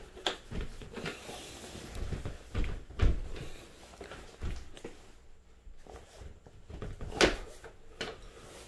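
A door being shut and locked: a series of knocks and clicks from the door and its lock, the heaviest thump about three seconds in and a sharp click a little after seven seconds.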